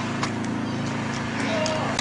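Running footsteps on asphalt, heard as a few short clicks, over a steady low hum. A short voice sounds near the end.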